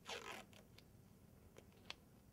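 A short rip of adhesive medical tape, lasting about half a second at the start, followed by a faint click near the end.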